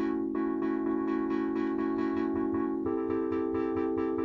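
Arturia MicroFreak synthesizer sustaining a held chord, which changes to another chord about three seconds in. Its filter is modulated by a smooth random LFO that does not retrigger, so the tone's brightness wavers subtly and is never quite the same twice.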